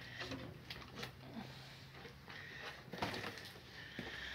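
Faint knocks and scrapes of a person moving through a crawlspace under a floor, among wooden joists and debris, with a low steady hum for the first two and a half seconds.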